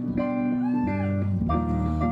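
A live band playing amplified music, with electric bass guitar and sustained keyboard notes. A new low bass note comes in about one and a half seconds in.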